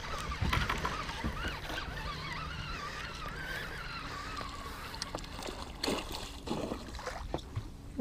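Hooked northern pike splashing and swirling at the water's surface as it is reeled toward the boat, with water sloshing and a few louder splashes in the second half.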